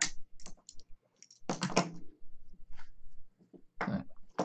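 Scattered clicks and knocks of an IEEE-488 cable's metal-shelled connectors being handled and laid on a workbench, with a louder clatter about one and a half seconds in.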